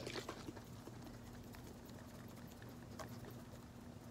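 Faint sloshing and light knocking of liquid in a small capped plastic bottle of water and dish detergent, shaken hard by hand.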